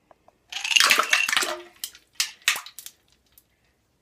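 Ice cubes tipped from a glass cup into the water of a toilet bowl: a splashing, clattering rush lasting about a second, then a few single clinks as the last cubes drop in.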